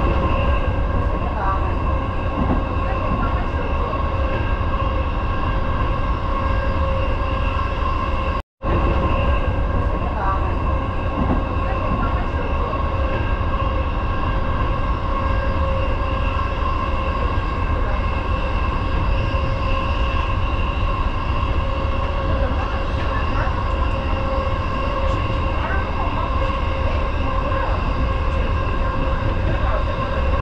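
Electric commuter train running steadily at speed, heard from the front cab: a constant rumble with a steady, unchanging whine over it. The sound drops out for a split second about eight seconds in.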